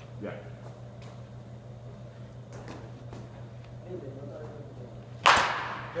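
A baseball bat hitting a pitched ball once near the end: a single sharp crack with a short ringing tail.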